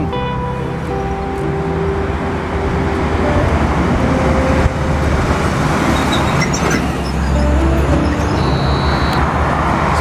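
Steady road traffic noise with a low rumble, swelling as a heavier vehicle passes in the second half.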